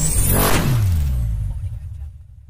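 Logo-intro sound effects: a rising whoosh that ends in a hit about half a second in, followed by a low rumble that falls in pitch and fades away.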